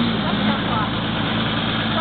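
An off-road 4x4's engine running steadily at idle, a constant low hum.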